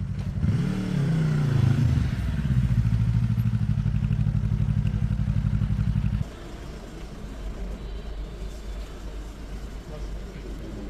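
A motor vehicle engine running close by: its pitch rises and falls in a brief rev, then it settles into a steady idle with an even pulsing beat. It cuts off suddenly about six seconds in, leaving a quieter street rumble.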